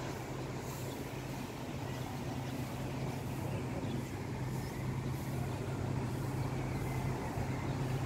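A steady low mechanical hum over an even rushing background noise, unchanging throughout.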